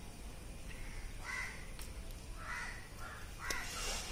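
A bird calling three times, about a second apart.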